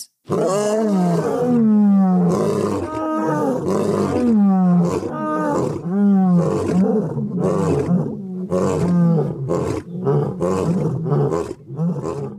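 A lion roaring in a bout: several long, deep roars, then a string of shorter, quicker grunts toward the end.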